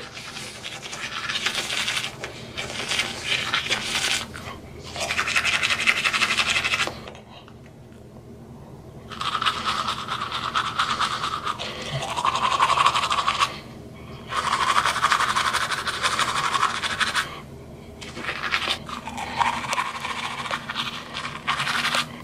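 Manual toothbrush scrubbing teeth through a mouthful of toothpaste foam, in several bursts of a few seconds each with short pauses between, the longest pause about seven seconds in.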